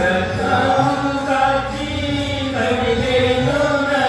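Singers performing a Telugu Christian devotional song, the voices holding long notes that step to new pitches.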